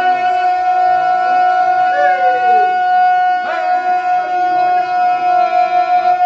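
Men singing ganga, the unaccompanied Herzegovinian polyphonic song: one voice holds a single long loud note while other voices slide against it about two and three and a half seconds in.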